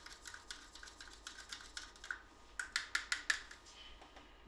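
Plastic syringe tip clicking and scraping against the sides of a small plastic medicine cup while stirring liquid medicine into water. A run of light clicks, a few a second, growing louder for a moment a little before the end.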